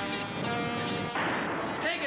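Cartoon soundtrack: background music, joined a little over a second in by a rushing noise effect like a blast.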